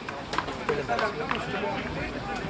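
Several people's voices talking and calling out at once around a sports pitch, with a few short sharp clicks mixed in.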